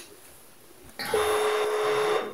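Telephone ringback tone heard over a phone's speaker: one steady, even beep about a second long, starting about a second in, over a faint line hiss.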